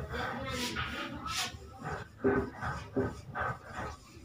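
Dry-erase marker writing on a whiteboard: several short squeaks and scratchy strokes as a word is written.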